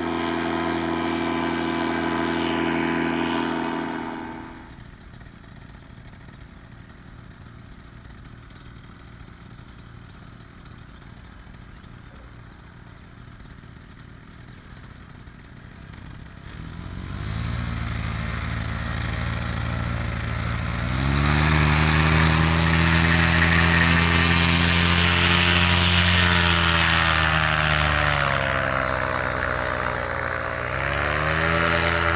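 Paramotor engine and propeller running: the engine fades back after about four seconds, then returns much louder and closer from about seventeen seconds in, its pitch holding steady and dipping near the end.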